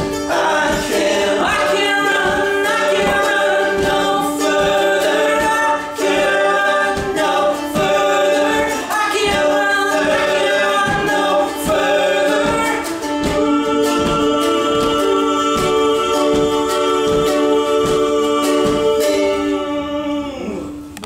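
Three men singing in close harmony over a strummed acoustic guitar. About two-thirds of the way through they settle into a long held final chord, which stops just before the end.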